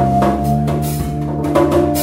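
Live instrumental trio of drum kit, electric guitar and bass playing. Several sharp drum strikes sit over held bass and guitar notes.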